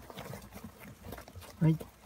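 Faint rustling and small scratchy clicks of a crowd of pet hamsters scrambling over wood-shavings bedding.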